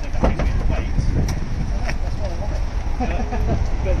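A man climbing into the rear seat of a Peugeot 108 five-door hatchback: a few short knocks and bumps against the door frame and seat, over a steady low rumble. A short laugh comes near the end.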